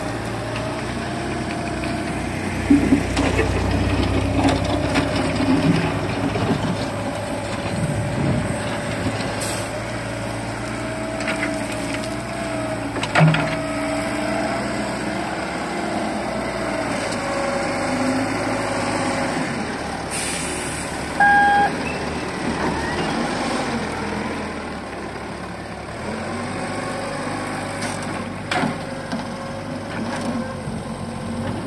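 Xiniu wheeled excavator's diesel engine running steadily under hydraulic load as the boom and bucket dig and swing, its pitch rising and falling with the work. A few sharp knocks of the steel bucket come through, and a short beep sounds a little past two-thirds of the way in.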